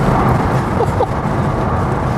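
Steady wind rush and tyre-on-road noise from an electric-converted 1969 Porsche 911 driving along, picked up by a camera mounted outside on the car's rear deck; no engine sound, as the car runs on an electric motor.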